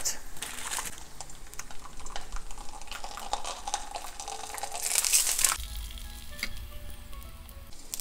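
A tortilla frying in hot avocado oil in a pan: a soft, steady sizzle and crackle, briefly louder about five seconds in. Faint background music with held notes is heard under it, plainest near the end.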